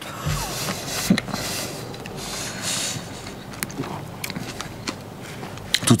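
A man biting into and chewing a large mouthful of an eight-patty burger, heard over a steady background hiss, with a low thud about half a second in and a few soft clicks.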